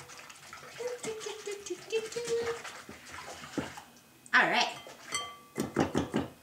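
Wire whisk beating egg and almond-milk batter in a glass bowl: rapid clicking of the metal wires against the glass with liquid sloshing.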